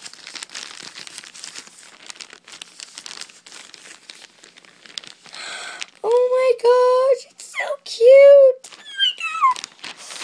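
Package wrapping crinkling and tearing as it is ripped open by hand, followed about six seconds in by a girl's loud, high-pitched excited squeals, the last one sliding down in pitch.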